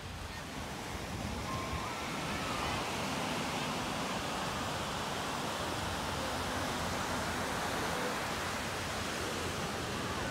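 Ocean surf breaking on a sandy beach: a steady rushing wash of noise that swells slightly about a second in.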